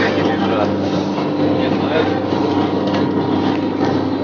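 Steady low drone of a vehicle's engine and running gear heard from inside the passenger cabin, with indistinct voices of passengers behind it.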